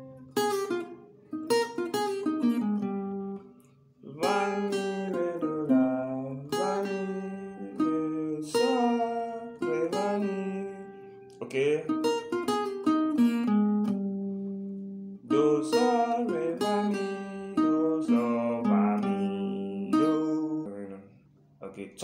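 Guitar playing a single-note highlife solo in short melodic phrases, with notes sliding into one another and brief pauses between phrases.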